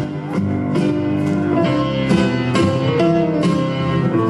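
Argentine folk music for the pericón dance, led by plucked guitar: a steady beat of strokes about twice a second under held melody notes.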